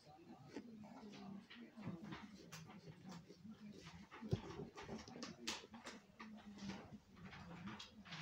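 Faint knife strokes cutting around the lid of a small pumpkin, the blade crunching and scraping through the rind, with one sharp knock about four seconds in. A low, drawn-out whine comes and goes underneath.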